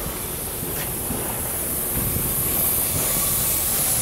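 Steady outdoor noise, a low rumble with a high hiss, slowly growing louder.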